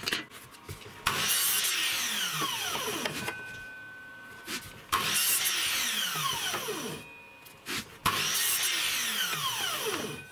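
Metabo mitre saw making three cuts through a narrow wooden strip, a few seconds apart. Each starts suddenly and loud, then fades as the motor and blade wind down in a falling whine.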